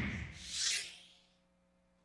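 Whoosh sound effect of a broadcast transition graphic: a hiss that swells and fades within the first second.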